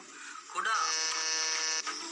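A steady, flat electric buzz, like a buzzer, lasting about a second and cutting off suddenly, just after a short spoken word.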